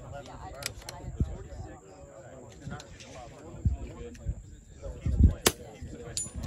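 A scoped .22 rimfire rifle firing: a sharp crack about five and a half seconds in, with a fainter crack near the start, over quiet talk and a few dull low thumps.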